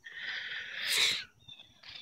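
A person breathing in sharply through the nose, a hissy sniff that swells for about a second and then stops.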